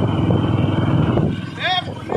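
Engines of several small motorcycles running together as a convoy rides slowly along a road. A voice calls out about one and a half seconds in.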